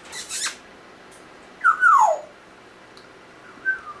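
African grey parrot calling: a short breathy burst at the start, then a loud whistled call that slides down in pitch about halfway through, and a brief falling whistle near the end.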